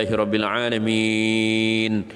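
A man's voice chanting the closing words of an Arabic prayer (du'a). A few moving syllables lead into one long held note of about a second near the end, which then stops.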